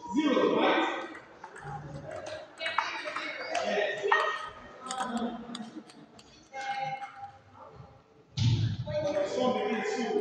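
Sharp clicks of a table tennis ball off bat and table, several in the first half, among people talking.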